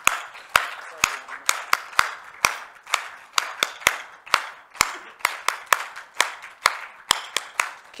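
Hand clapping: sharp, uneven claps about three a second, with softer clapping behind them.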